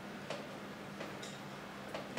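Quiet room tone with a steady low hum, broken by a few faint, scattered light clicks.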